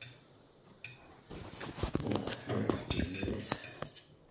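Metal fork clinking and scraping on a ceramic dinner plate. From about a second and a half in, it is mixed with a dense run of irregular clicks and rubbing as fingers handle the phone over its microphone.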